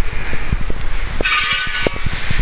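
Low rumble and scattered knocks of a handheld camera being moved, with a short honk-like pitched tone for under a second just past the middle.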